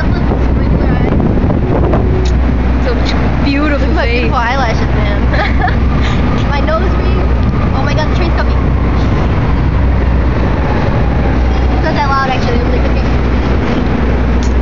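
Loud, steady rumbling outdoor city noise with a deep low drone underneath, and a voice coming through in short snatches a few seconds in and again near the end.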